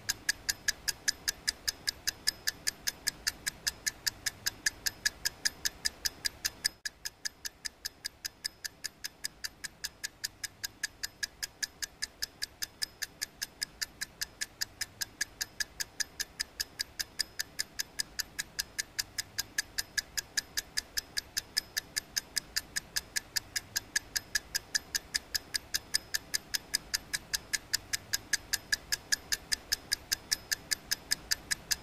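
Steady, even ticking, about three to four sharp ticks a second, with no change in pace.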